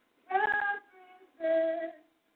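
A woman singing a slow song, holding two long notes with short breaks between them and a fainter note in the middle.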